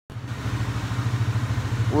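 Yamaha ATV single-cylinder engine idling with a steady, fast low pulse.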